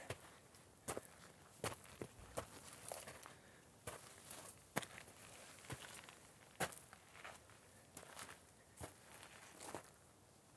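Faint footsteps crunching on rocky, gravelly ground at a steady walking pace, a little more than one step a second.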